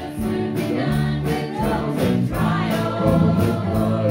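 A gospel hymn sung by a small group of voices over strummed acoustic guitar accompaniment, with a steady beat.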